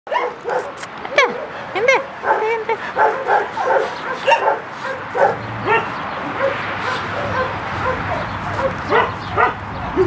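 Several young dogs whining and yipping in quick succession, with two long sliding whines about one and two seconds in.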